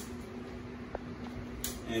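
Steady low hum of a running room fan, with a couple of faint clicks about a second in and near the end.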